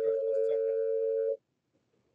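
Telephone dial tone: a steady two-note hum that cuts off suddenly about a second and a half in, as a call to the defendant is about to be placed.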